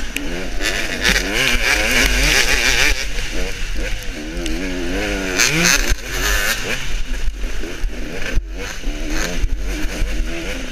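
Dirt bike engine heard from the rider's helmet camera, revving up and down over and over as the throttle is worked on a rough trail, with a low rumble of wind on the microphone and a few sharp knocks.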